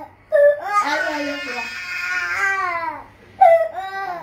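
Baby crying: one long cry that rises and falls in pitch for about two and a half seconds, then a second cry starts near the end.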